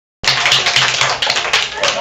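A classroom of children clapping, many quick, uneven claps, with children's voices mixed in. It starts abruptly just after the beginning and thins out near the end.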